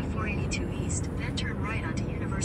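Steady low road and engine rumble inside a moving car, with faint, indistinct voices over it.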